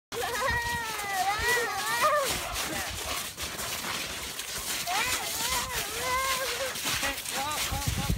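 A young child's high voice in drawn-out, wordless sing-song phrases, twice, over footsteps in snow and slush.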